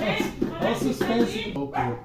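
A dog whining and yipping in quick, rising and falling cries.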